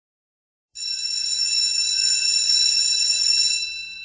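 A high, bell-like ringing tone that starts suddenly under a second in, holds steady for nearly three seconds, then fades away near the end.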